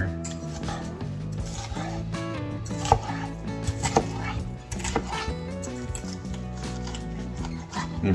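A large kitchen knife is cutting raw chicken breast on a wooden cutting board, the blade knocking the board a few times, around the middle. Background guitar music plays throughout.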